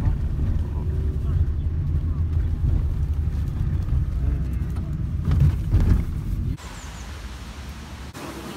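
Steady low rumble of a car driving, heard from inside the cabin. It cuts off abruptly about six and a half seconds in, giving way to quieter outdoor background.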